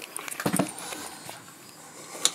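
Quiet handling noise: a couple of soft knocks about half a second in, then faint rustling as the camera is swung up toward the roof vent fan's control panel.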